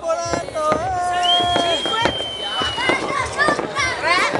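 New Year's fireworks going off across a town: many scattered bangs and pops, with long whistling tones, one of them slowly falling in pitch, and voices.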